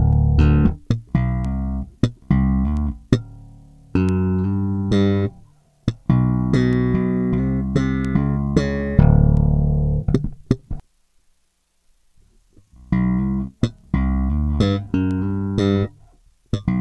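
Electric bass guitar played with slap technique: thumb-slapped and popped notes in a quick riff with sharp attacks. It falls silent for about two seconds in the second half, then the riff starts again.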